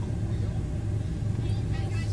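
Car engine idling with a steady low hum, heard from inside the cabin while stopped at a light.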